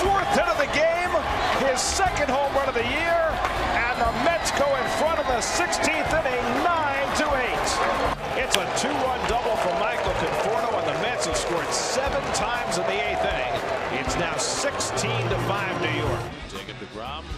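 Ballpark crowd cheering, with many voices shouting over each other and sharp claps throughout, after a home run.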